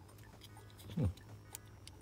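Faint small clicks from a die-cast Hot Wheels Plymouth Duster toy car as fingers wiggle its engine insert, which sits loose in the hood. A short hummed "hmm" comes about a second in.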